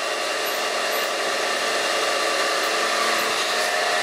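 Electric power tool spinning a polishing disc against a painted steel fridge panel: a steady motor whine with several held tones over a rushing hiss.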